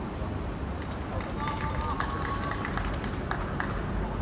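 Players' voices calling across a football pitch, one short shout about one and a half seconds in, over a steady low outdoor rumble.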